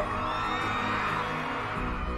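Arena crowd cheering and whooping over background music, the cheers fading near the end.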